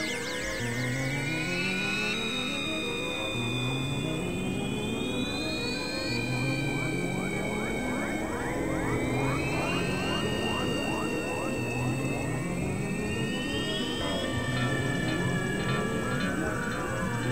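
Electronic ambient trance music: a synthesizer pattern climbs upward in steps, repeating about every two seconds, under slow rising synth sweeps. There is a thick spray of quick upward chirps in the middle stretch.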